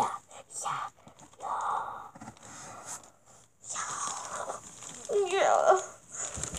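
A child's indistinct voice in short breathy, whispered bursts, with a brief voiced sound near the end.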